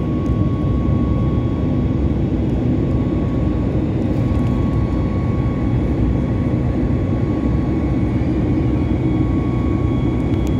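Jet airliner cabin noise in flight: the engines and airflow make a steady, deep rush, with a faint thin whine that comes and goes.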